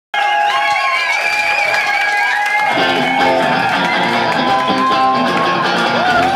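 Live rock band playing in a club, with saxophones and electric guitar; about three seconds in, the sound fills out as the bass and drums come in underneath.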